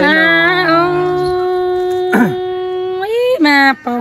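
A woman singing a slow folk song in long, wavering held notes, with a second, lower held tone under her voice for about the first second.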